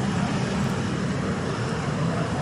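Steady street traffic: the low engine noise and tyre noise of passing motorcycles, three-wheelers and cars, even in level.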